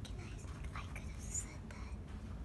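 Faint whispered speech, quiet and broken, over a low steady room rumble.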